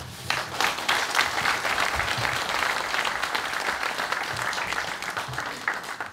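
Audience applauding: many hands clapping in a dense patter that starts a moment in and dies away near the end.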